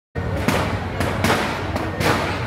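Firecrackers going off: sharp bangs about every half second over a steady low rumble.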